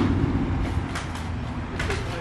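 Steady low rumble of outdoor background noise, with a few faint clicks near the middle and the end.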